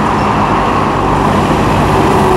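Hitachi EX15-1 mini excavator's diesel engine running steadily under load while its hydraulic boom and arm are worked in a test dig.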